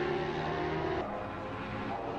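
Superbike racing motorcycles running at high revs on the track, heard as a steady engine drone whose pitch shifts slightly about a second in.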